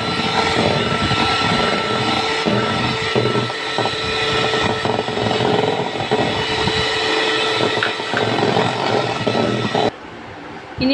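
Electric hand mixer running steadily in a bowl of cake mixture: a constant motor whine with the beaters churning through the mix. It cuts off abruptly just before the end.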